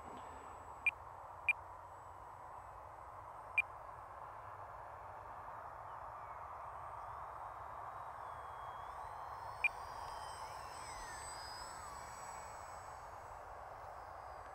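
Faint high-pitched whine of the E-flite Micro Draco's electric motor and propeller on 4S, sliding up and down in pitch in the second half as the plane makes a low pass, over a steady hiss. Four short sharp chirps cut through, three in the first four seconds and one near ten seconds.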